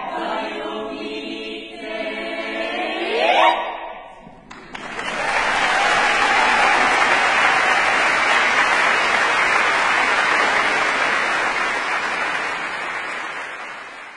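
A Bulgarian folk choir singing a cappella holds a final chord and cuts it off with a quick upward vocal slide. After a short gap, about four and a half seconds in, the audience applauds steadily, and the applause fades near the end.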